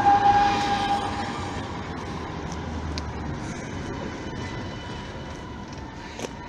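Electric tram running past on street rails, its motor whine fading over the first second or two as it moves off, leaving steady traffic noise.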